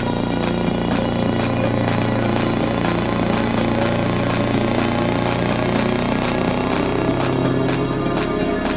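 Electronic dance music track with a steady, evenly spaced beat over a sustained low bass tone.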